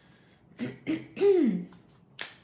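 A woman clearing her throat: a couple of short rasps, then a louder voiced sound falling in pitch just past the middle.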